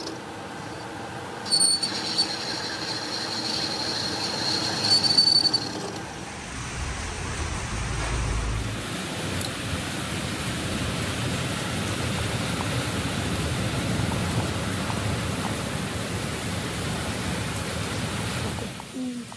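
Metal lathe boring a steel truck axle hub: the cutting tool squeals at a high, steady pitch for about four seconds. After that comes a steady broad machine noise with a brief low rumble.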